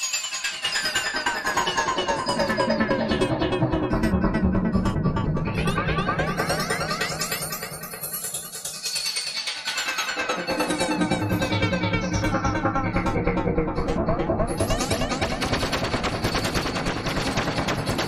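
Sequenced analog synthesizer music from a Korg SQ-1 step sequencer driving a Korg analog synth: a fast stream of short repeating notes. About halfway through it thins out briefly, then comes back with a heavier bass line.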